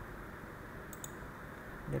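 A computer mouse clicking: two sharp ticks in quick succession about a second in.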